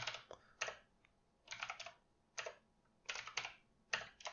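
Typing on a computer keyboard: short runs of keystrokes with brief pauses between them, about six runs in all.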